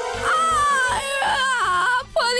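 A boy's voice crying in one long wail that falls in pitch, over background music with a steady beat.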